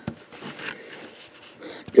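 Waterman fountain pen's medium 14K gold nib scratching faintly on lined paper in a few short strokes, with a light tick at the start and another near the end.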